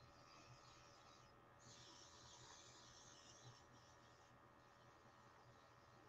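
Near silence with a faint, high hiss of a makeup airbrush spraying, briefly breaking off about a second and a half in.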